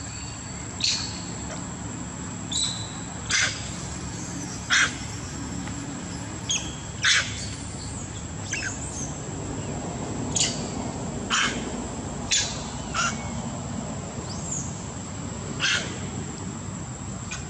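Short, sharp, high animal calls, about a dozen at irregular intervals, some sliding down in pitch.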